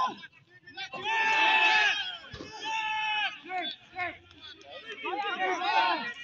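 Voices shouting in long, drawn-out calls. One comes about a second in, another around three seconds, and a burst of shouting near the end.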